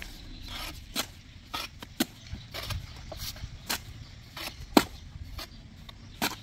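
A mason's steel trowel scooping mortar from a metal wheelbarrow and laying it along a straightedge: irregular scrapes and sharp clinks of the trowel, the loudest a sharp knock about three-quarters of the way through.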